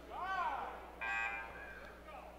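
A short shout that rises and falls in pitch, then about a second in a gym scoreboard buzzer sounds one flat, steady tone for about half a second, the kind that signals a substitution at the scorer's table.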